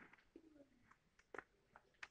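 Near silence: room tone with a few faint clicks and a brief, faint, falling low tone about half a second in.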